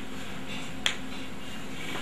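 A single sharp click about a second in, over a steady low hum of room noise.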